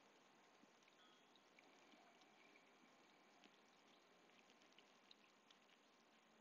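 Near silence: faint outdoor background hiss with a few faint scattered ticks.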